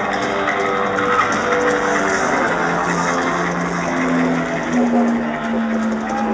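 Live heavy metal band playing loud through a stadium PA, with long held notes and a steady wash of crowd noise.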